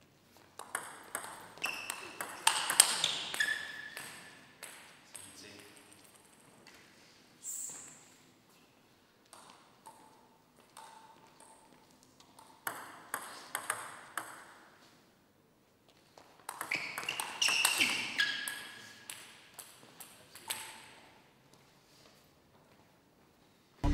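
Table tennis ball being struck by paddles and bouncing on the table in quick rallies: rapid sharp pings, in two dense bursts early and late, with scattered single bounces between.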